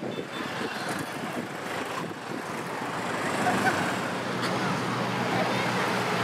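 Jet airliner engine noise, a steady rumble with a low hum that builds steadily louder.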